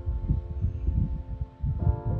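Low, irregular rumbling thumps of wind buffeting the microphone, under soft background music with held notes; a new chord comes in near the end.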